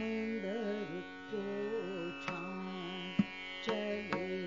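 Hindustani classical female vocal singing a bandish, holding notes and gliding between them, over a steady tanpura drone, with a few sharp tabla strokes in the second half.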